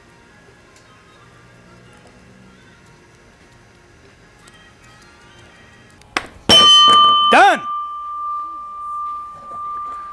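Quiet background music for about six seconds. Then a loud doorbell-like ding-dong chime starts suddenly, about a second long, with one high tone ringing on afterward.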